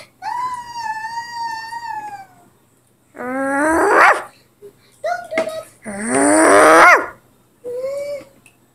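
A child's voice making wordless high-pitched squeals and wails: a long held squeal, then two wails that rise in pitch, the second the loudest.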